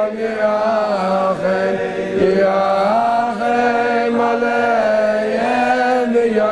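Slow, chant-like male singing: long held notes that slide smoothly from one pitch to the next.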